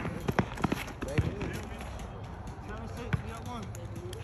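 A basketball bouncing on an outdoor asphalt court: a run of dribbles in the first second and a half, then a single bounce about three seconds in, with players' running footsteps and faint shouting voices.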